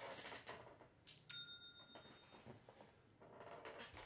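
Near silence with faint rustling and handling noises, and a brief faint high ringing tone of about a second starting a little over a second in.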